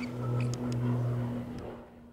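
A steady low hum with a few light clicks over it, fading away near the end.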